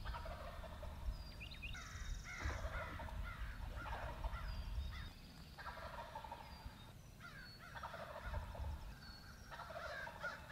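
Wild turkey gobbling again and again, each gobble a rattling burst of a second or two. Short high chirps from a small bird repeat behind it.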